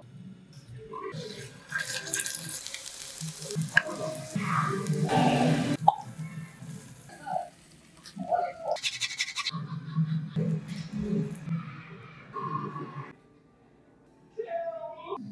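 Cooking sounds in a frying pan, with scraping, stirring and the clink of metal tongs, and some music underneath. It drops to near silence shortly before the end.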